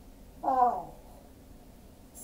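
A woman's voice: one short spoken word with a falling pitch about half a second in.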